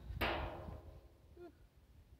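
A single sharp metal clank about a quarter second in, as the cordless angle grinder comes against the steel drum's lid, with the metal ringing and fading over about a second. Wind rumbles on the microphone throughout.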